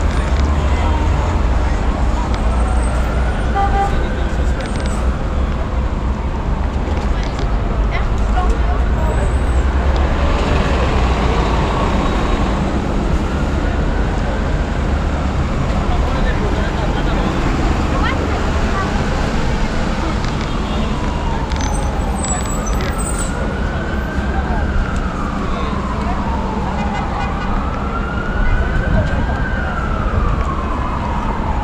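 Emergency vehicle siren wailing, its pitch slowly rising and falling about every five seconds, over a steady low rumble of street noise.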